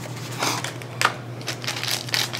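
Trading cards and foil pack wrappers handled at a table: rustling and crinkling, with a sharp click about a second in.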